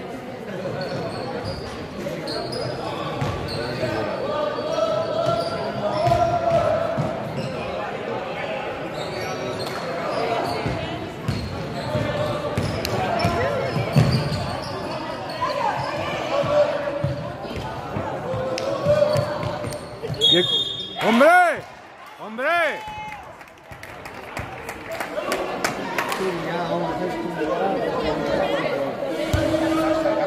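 Basketball bouncing on a hardwood gym floor during play, with voices echoing around a large sports hall. About twenty seconds in, a short high whistle-like tone, then two loud squeals that rise and fall in pitch.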